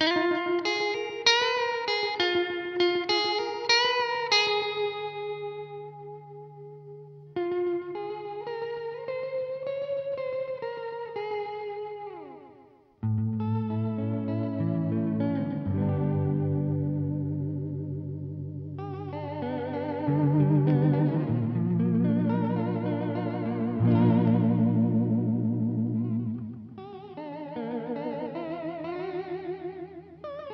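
Electric guitar played through an Old Blood Noise Endeavors Black Fountain oil-can-style delay pedal. Single-note phrases give way to fuller chords about a third of the way in, with the delayed repeats wavering and warbling in pitch from the pedal's modulation.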